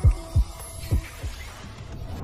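Heartbeat sound effect in a logo sting: two pairs of deep thumps, each dropping in pitch, about a second apart, over faint music.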